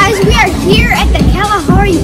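A child's voice talking, with background music underneath.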